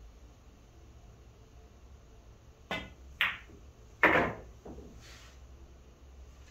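Pool shot: the cue tip clicks against the cue ball, the cue ball clacks into the object ball about half a second later, and a louder knock with a short low tail follows about a second after that as the balls travel on.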